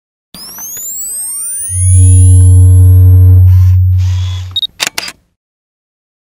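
Electronic intro logo sound effect: rising sweeps, then a loud, deep, steady bass tone with a few higher steady tones over it from about two to four and a half seconds, ending in a few sharp clicks about five seconds in.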